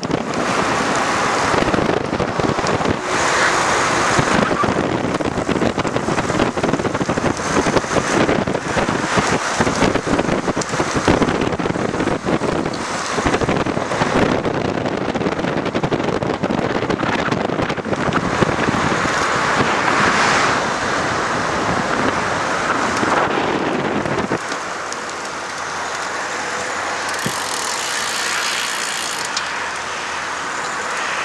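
Wind noise buffeting the microphone of a camera carried on a moving bicycle, mixed with road traffic. Late on, the low rumble drops away, leaving a lighter hiss.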